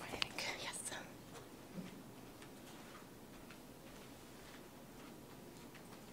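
A soft, whisper-like voice in the first second, then a hushed room with faint scattered clicks and ticks.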